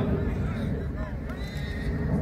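A group of football players' voices calling and hollering in short rising-and-falling cries over a constant low rumble.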